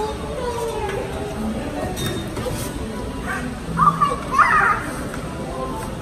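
Music from a coin-operated Falgas kiddie ride car while it runs, with a young child's voice in two short loud bursts about four seconds in.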